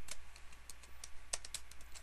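Computer keyboard being typed on: about ten irregular key clicks in two seconds as a word is entered.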